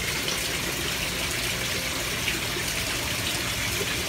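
Steady running water from an aquaponics system's water flow, an even rush without a break.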